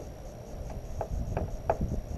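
A few short clicks, about a third of a second apart, from a zipper being worked closed on a fabric heated pants liner, over a low wind rumble.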